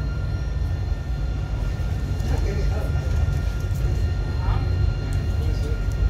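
Tram running, heard from inside the car: a steady low rumble with a faint steady high whine. Faint passenger voices come through now and then.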